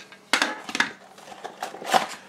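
Cardboard product box and its cardboard insert being handled: a sharp knock about a third of a second in, a few lighter clicks, then scraping and rustling that builds near the end.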